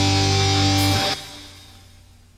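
The closing guitar chord of a pop song, held and then stopping abruptly about a second in, leaving only a slight, short fade-out.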